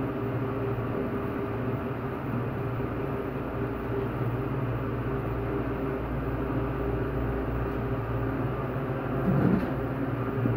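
A 1989 Dover hydraulic service elevator cab in operation: a steady hum and low rumble with a few held low tones. A brief bump comes about nine and a half seconds in.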